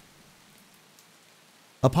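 Faint, steady rain, a soft even hiss without any rhythm. A man's narrating voice comes in near the end.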